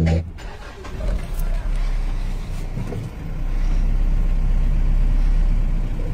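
Vehicle engine and road noise heard from inside the cabin while driving: a steady low rumble that grows louder from about three seconds in.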